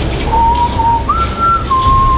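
A person whistling a few held notes: a lower note with a brief dip, a step up to a higher note about a second in, then a drop to a middle note held on near the end.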